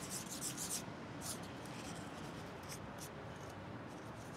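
Bare hands digging and scraping through dry sand: short, scratchy rustles, a quick cluster in the first second and then a few scattered ones.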